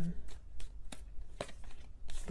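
A tarot deck shuffled by hand, giving a string of irregular light snaps and flicks from the cards.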